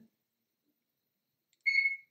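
Near silence, then a single short electronic beep, one steady high tone, near the end.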